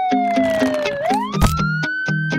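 A cartoon whistling sound effect gliding slowly down in pitch, then sweeping back up about a second in, over children's background music with a steady beat. A thump lands about one and a half seconds in.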